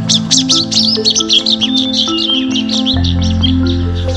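Birds calling in a quick, busy run of short high chirps that thins out after about two and a half seconds, over soft background music of mallet-like notes, with a low bass note coming in near the end.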